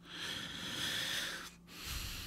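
A person breathing close to the microphone: one long, unpitched breath of about a second and a half, then a softer breath starting near the end.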